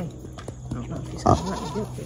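A pot-bellied pig, held on its back, gives one short loud call about a second in, over a steady low hum.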